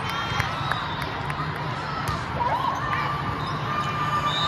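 Volleyball rally in a busy indoor hall: a steady background of crowd chatter, with a few sharp knocks of ball contacts and short sneaker squeaks on the court.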